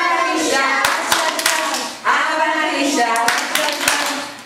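A woman singing a lively Hebrew children's song in phrases, with hands clapping along in a steady rhythm.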